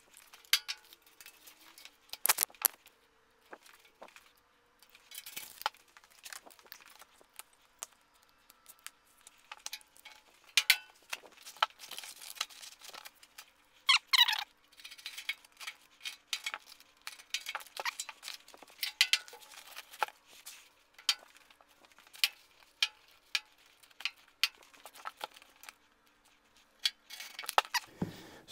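Scattered light clicks, taps and rustles of anti-slip traction tape being handled and laid out on a steel motorcycle lift deck, with small objects clinking as they are set down. A brief rising squeak comes about halfway through.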